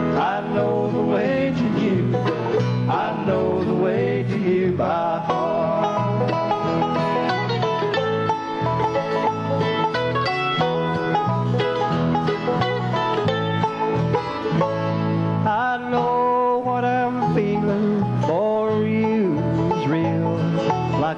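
Live bluegrass band playing an instrumental break between verses, with mandolins and acoustic guitar picking over a steady rhythm, and no singing.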